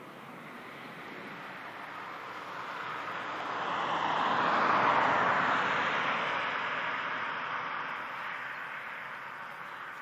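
Fighter jet passing overhead, identified by its twin tails as an F/A-18 Hornet. Its engine rush swells to a peak about halfway through, then fades as it moves away.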